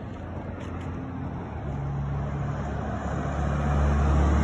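A motor vehicle's low engine hum, growing steadily louder over a few seconds, over outdoor road noise.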